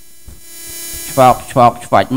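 Steady electrical mains hum under a pause in a man's speech, with a faint rising hiss; the voice comes back a little over a second in.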